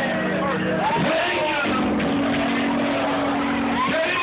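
Sustained organ chords, holding, then moving to a new chord about a second and a half in, under several voices calling out and singing with rising and falling pitch.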